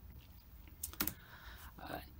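Two quick clicks of a computer key about a second in, in a quiet room with a faint low hum; a short spoken 'uh' follows at the very end.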